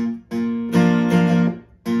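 Steel-string acoustic guitar strumming an A chord: four strums in quick succession that let the chord ring, then a short break near the end before the next strum.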